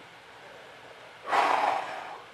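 A single short puff of breath, about half a second long, a little past halfway through: a blow of air to clear carpet fluff off a vinyl record.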